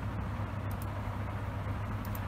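Steady low background rumble, with no speech over it.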